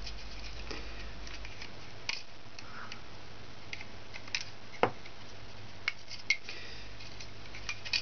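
Scattered light clicks and taps of a plastic crochet hook and rubber bands on a plastic Rainbow Loom's pegs as the bands are looped up, the sharpest click a little before the middle, over a steady low room hum.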